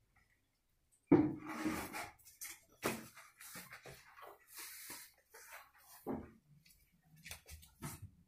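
A cloth-wrapped floor squeegee knocking and scraping over a tiled floor and against furniture: a loud knock about a second in, then scattered knocks and short scraping sounds.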